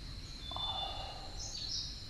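Countryside ambience: a steady high-pitched insect drone, with short bird chirps over it and a brief soft rustle about half a second in.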